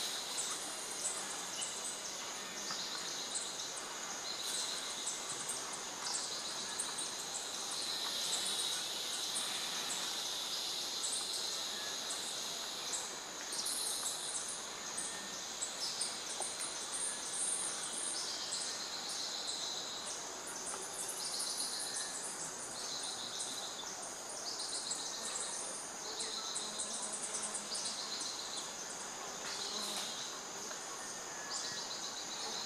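Amazonian rainforest insect chorus: high-pitched pulsed buzzing trills, one after another every second or two, over a steady high hiss.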